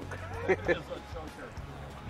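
Short voice exclamations over a low, steady hum.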